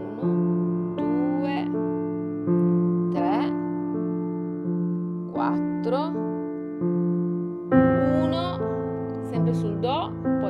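Acoustic piano playing slow broken chords in triplets with the sustain pedal held, so the notes ring over one another. The highest note at each chord change is played louder, about every one to two seconds, and the notes after it are played softer, like an echo.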